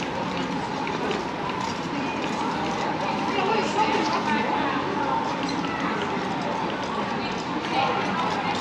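Pedestrian street ambience: passers-by talking and walking, with footsteps on brick paving.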